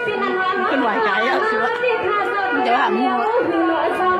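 Backing music with long held tones, with a woman's voice over it through a microphone.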